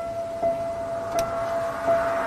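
Background music: a single note re-struck about every three-quarters of a second, ringing on between strikes over a faint hiss.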